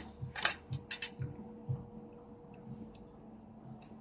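Quiet sounds of someone eating soup: a few short clicks in the first second or so, and soft low thumps about twice a second over a faint steady hum.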